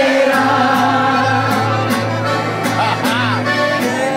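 Live corrido performance: accordion playing with a woman singing at the microphone over guitar and bass, with a steady beat.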